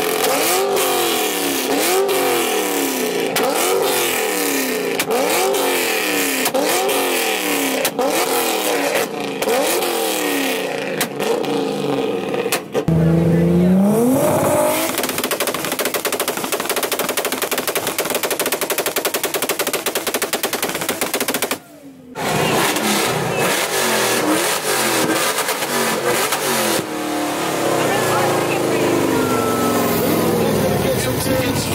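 Modified car engines revved hard in quick repeated blips, one after another. Then an engine is held on a two-step launch limiter, its exhaust crackling in a rapid machine-gun stutter. Crowd noise runs underneath.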